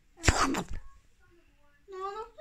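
A person's single short, harsh breathy burst from the throat, about half a second long, a quarter of a second in. A voice starts just before the end.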